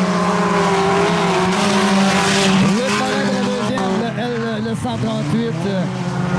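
Several four-cylinder race cars running together on a muddy dirt track, their engines revving up and down in overlapping pitches. A burst of rushing noise comes around two seconds in.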